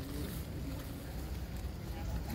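A low, steady rumble, like wind buffeting the microphone.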